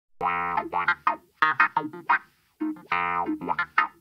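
A short musical jingle of quick pitched notes. The same phrase is played twice, with a brief gap between the runs.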